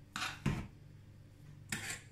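Hands patting and pressing soft mashed potato into a small patty: a rubbing slap with a low thud about half a second in, and a second, shorter one near the end.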